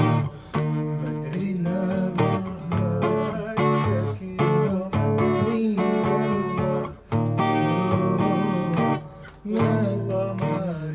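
A man singing to his own strummed acoustic guitar, with short breaks between phrases.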